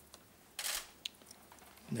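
Camera shutter clicks in a quiet room: a short rattling burst about half a second in, then a single sharp click about a second in.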